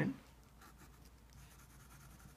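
Faint scratching of a pencil drawing short marks on a paper puzzle grid.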